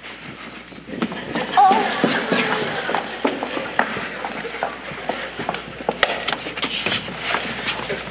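Theatre audience reacting with cheering and laughter, dotted with scattered claps and the knock of actors' footsteps on the stage floor, in a large hall.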